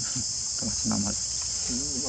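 Steady high-pitched drone of insects, unbroken throughout, with a few short low calls that bend in pitch around the middle.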